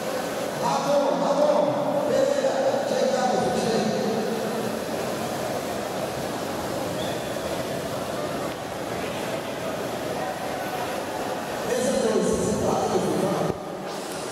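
Steady murmur of indistinct voices from a crowd of spectators in a large hall, with nearer voices standing out about a second in and again near the end.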